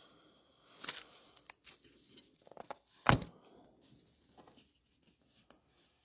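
Handling noise: two sharp clicks about two seconds apart, the second the loudest, with faint rustling and a few small ticks in between.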